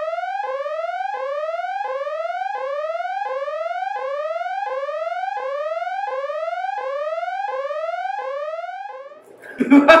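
Electronic sound effect: a single tone gliding upward, dropping back and gliding up again about one and a half times a second, fading out about a second before the end. A short laugh follows near the end.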